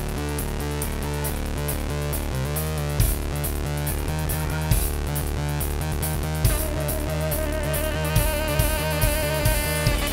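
Live band playing an instrumental passage on drum kit and keyboard, with a steady beat. About six and a half seconds in, a saxophone comes in with a long, wavering held note.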